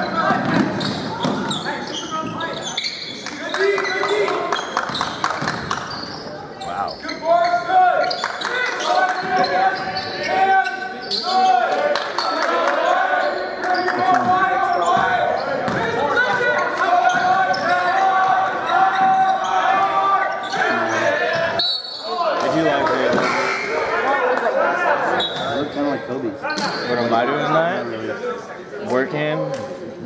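Sound of an indoor basketball game: the ball bouncing and players moving on the hardwood court, under overlapping shouts and chatter from players and spectators, echoing in a large gym.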